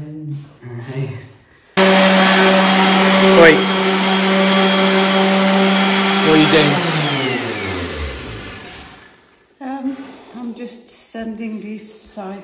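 Random orbit sander switched on suddenly about two seconds in, running at a steady high speed for about five seconds, then switched off and spinning down with a falling pitch until it stops.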